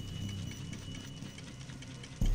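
Faint, regular ticking and clicking of a mechanical ball-drop machine, small balls running and dropping through its glass tubes, over a low steady hum.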